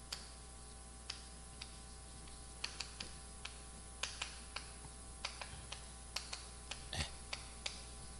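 Chalk tapping and scratching on a chalkboard as figures are written: faint, irregular sharp clicks a few to the second, with a somewhat stronger tap about seven seconds in.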